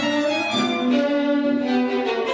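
Violin and double bass playing a bowed duet of sustained notes: the bass holds a low note while the violin's higher line moves above it. The music is contemporary classical.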